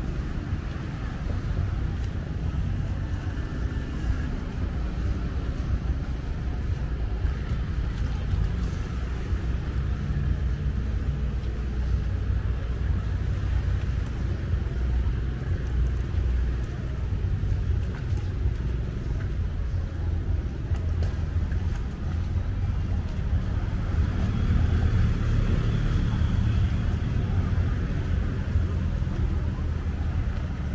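Steady low rumble of an outdoor street ambience: road traffic mixed with wind on the microphone. It grows a little louder about three quarters of the way through.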